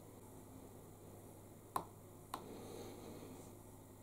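A small switch clicking once as the breadboard computer's power is turned on, then a fainter second click about half a second later, over quiet room tone.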